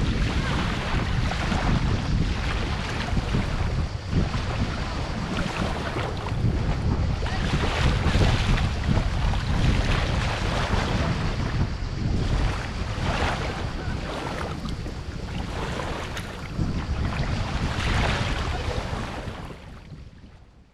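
Wind buffeting the microphone over the rushing wash of sea waves, with louder surges every few seconds; the sound fades out at the very end.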